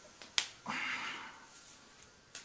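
A single sharp click from handling a plastic dropper bottle and glass test tube, about half a second in, followed by a brief hiss.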